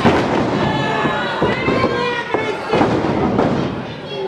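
Several sharp impacts from a pro wrestling match in the ring, the loudest right at the start and more about a second and a half in and near three seconds, with crowd voices shouting over them.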